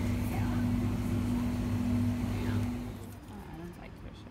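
Refrigerated drinks cooler humming steadily, with faint voices in the background; the hum stops suddenly about three seconds in.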